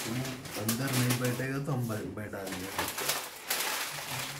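People talking in low voices, with a voice held low and steady for about a second, and scattered clicks and rustles of things being handled on a work table.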